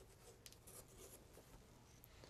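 Near silence, with faint rustling of a cloth bandana being unfolded and a soft click about half a second in.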